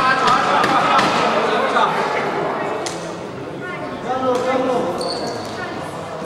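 Badminton rally: sharp racket strikes on the shuttlecock and thuds of footwork on the court, echoing in a large sports hall over indistinct spectator chatter.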